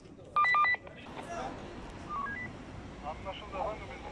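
Electronic beeping: a quick run of short, loud, steady-pitched beeps about half a second in, then a faint rising three-note chime about two seconds in, over background voices.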